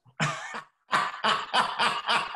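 A man laughing heartily and breathily: one short burst, then from about a second in a run of laugh pulses about three a second.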